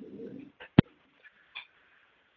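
A brief faint low murmur, then a single sharp click a little under a second in.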